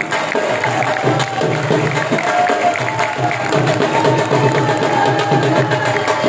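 Live dhol drumming in a driving jhumar rhythm, with a been (bagpipe) carrying a held, sliding melody over it.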